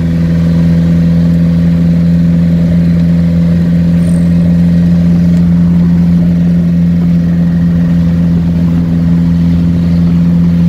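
Datsun Fairlady Roadster's rebuilt R16 four-cylinder engine running at steady revs while cruising, heard from inside the car.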